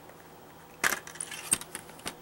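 Plastic CD jewel case being handled and opened: a sharp clack about a second in, followed by a few lighter clicks and rattles and a second sharp click.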